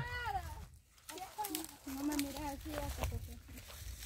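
Faint, distant talking, broken into short phrases, with a few light clicks and crackles like footsteps on dry leaf litter.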